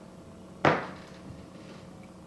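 A single sharp knock, a little over half a second in, dying away quickly.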